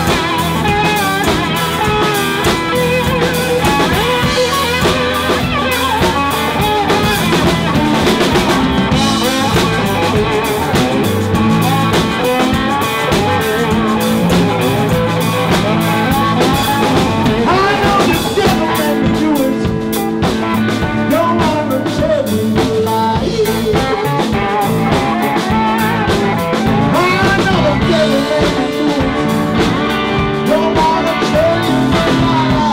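Live blues-rock band playing an instrumental passage: electric guitars over bass and a drum kit, with a lead line of bending, wavering notes.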